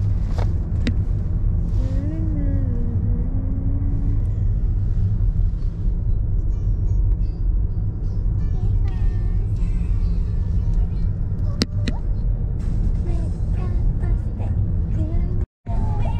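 A car driving along a road, heard from inside the cabin: a steady low rumble of road and engine noise. A brief voice sound comes about two seconds in, and the sound cuts out for an instant just before the end.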